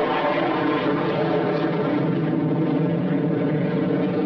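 Jet aircraft engine noise, loud and steady, from a jet flying low over the sea.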